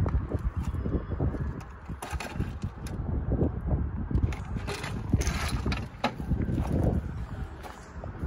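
Low, uneven rumble of wind on a phone microphone, with irregular crunches and knocks of footsteps on gravel and the phone being handled.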